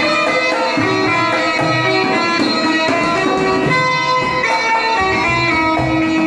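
Bulbul tarang, the Indian keyed zither, playing a continuous melody of quick plucked notes.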